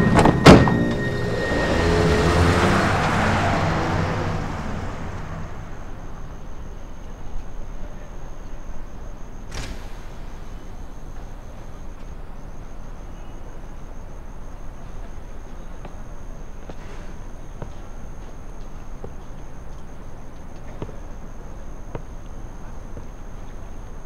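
A Volkswagen taxi's car door shut with a thunk about half a second in, then the taxi pulling away: a swell of engine and tyre noise that rises and fades over the next few seconds. After that only a low steady background with a faint high steady tone.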